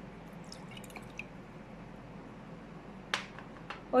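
Liquid dripping and trickling from a small tipped glass into a glass mug, a few faint drips early on, then a sharper tap about three seconds in and another soon after.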